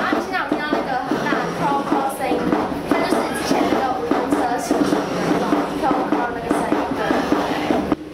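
A woman talking steadily, with background music under her voice.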